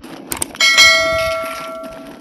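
Subscribe-button sound effect: a couple of quick clicks, then a single bright bell ding that rings on and fades away over about a second and a half.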